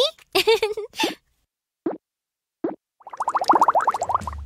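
Cartoon sound effects: two short plops about two and two and a half seconds in, then a quick string of rising bubbly pops near the end, a bubble transition effect.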